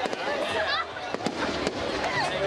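Fireworks going off overhead: several sharp bangs and crackles spread through the two seconds, over people talking and calling out close by.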